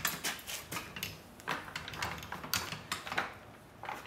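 Red steel floor jack and wooden caster-wheeled engine cradle being maneuvered into place together on a concrete floor: a run of irregular metallic clicks, knocks and rattles.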